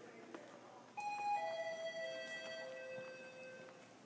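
A three-note electronic chime stepping down in pitch, the notes struck in quick succession about a second in and left ringing until they fade out near the end.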